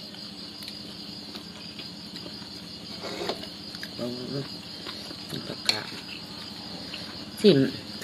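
Crickets trilling in a steady, high-pitched night chorus, with a sharp clink of a metal spoon against a plate a little past halfway and a few short murmurs.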